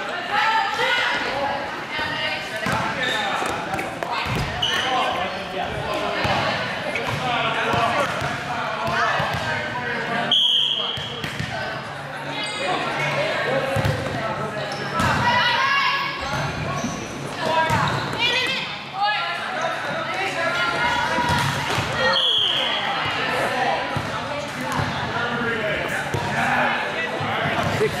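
Indoor volleyball being played in a gym that echoes: voices of players and onlookers run throughout, with the thumps of the ball being served, passed and hit. Two short, high-pitched tones sound about a third of the way in and again near the three-quarter mark.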